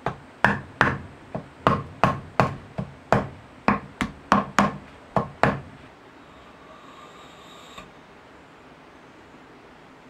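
A wooden mallet knocks a chamfering knife blade into the end grain of a log stump, about fifteen sharp taps over five seconds. A faint scrape follows as a bamboo strip is drawn between the set blades to shave off its edges, stopping suddenly near the end.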